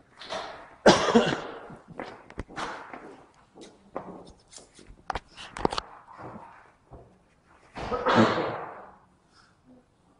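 A cough about a second in, then scissors snipping through paper-backed EPDM flashing, with sharp clicks of the blades and the release paper being handled. There is another loud rustling burst near the end.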